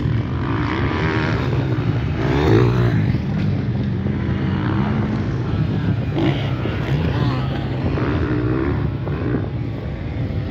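Motocross bike engines running hard on the track, revving up and down as riders pass and take a jump.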